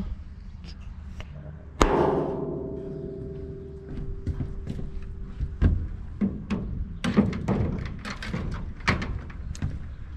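A sharp metallic clang with a ringing tone that fades over about four seconds, then a knock and a run of clicks and knocks from handling a water hose connection on a sheet-metal roof.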